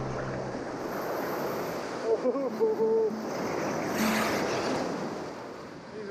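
Heavy surf breaking and washing around in the shallows: a steady rush of foaming water, with a louder crash of a wave about four seconds in.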